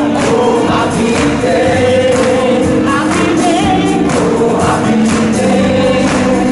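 Gospel music with a group of voices singing together over a steady percussive beat, loud and continuous.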